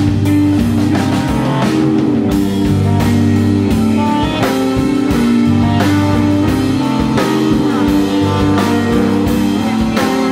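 Live rock band playing an instrumental jam: electric guitar over electric bass and drum kit, loud and steady.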